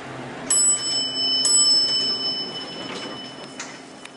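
Elevator arrival chime: two bell-like dings about a second apart, the second ringing on and fading, as the cab reaches its floor.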